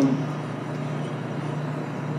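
Steady low hum over even background noise in a room, in a pause between words.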